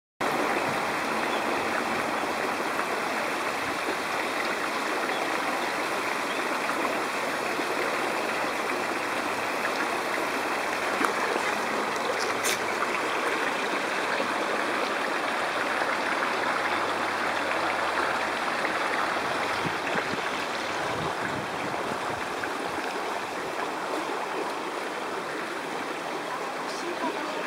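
A steady rushing noise like running water, even throughout, with one brief click about halfway through.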